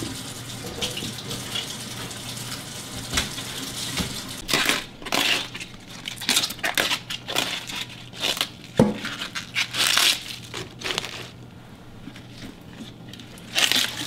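Collard green leaves being torn off their thick stems by hand: a run of crisp, irregular ripping and crunching sounds for several seconds, with one dull knock among them. The run begins about four seconds in and dies away near the end.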